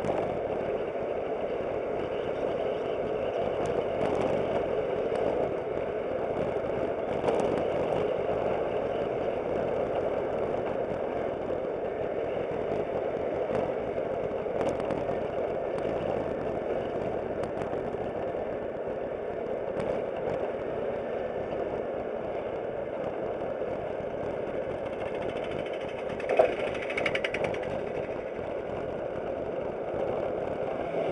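Aprilia SportCity scooter on the move, heard from a dashcam mounted on it: a steady blend of engine and wind noise. A short louder burst of sound stands out near the end.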